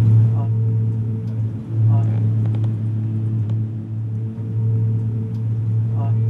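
Flight simulator's aircraft engine sound: a steady low drone, with two brief dips.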